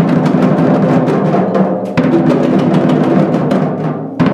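A group of hand drums, djembes and congas with a snare drum, played together in a drum circle: a dense, steady beat of many overlapping strikes.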